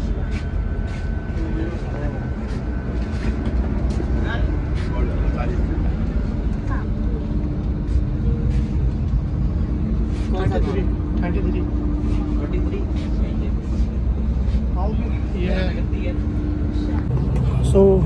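Steady low hum of a coach bus idling inside the passenger cabin, with indistinct chatter from people on board.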